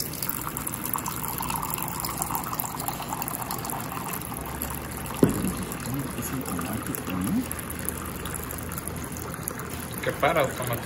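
Electric desk water dispenser pumping a thin stream of water into a ceramic mug, a steady trickle and splash as the mug fills. There is a single sharp knock about five seconds in.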